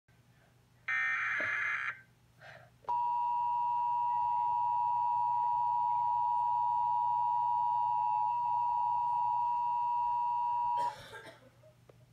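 NOAA weather radio alert: a roughly one-second digital data burst (the SAME alert header), then the steady warning alarm tone held for about eight seconds before cutting off, heralding a flash flood warning broadcast.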